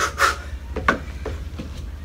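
Sneakers shuffling and stepping on a wooden deck during a shuffle-kick cardio drill: four or five short scuffs and thuds over a steady low hum.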